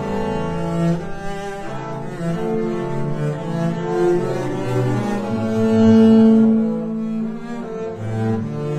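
Five double basses bowed together, playing a slow melody in long held notes, with the loudest note swelling about six seconds in.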